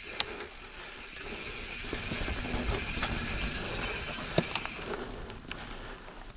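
Mountain bike rolling down a dirt forest trail: steady tyre and drivetrain noise with a hissing edge, growing louder about two seconds in. Two sharp clicks from the bike, one right at the start and a louder one a little after four seconds.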